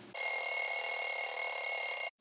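A steady ringing sound effect: several high, level tones over a hiss, starting sharply and cutting off suddenly after about two seconds.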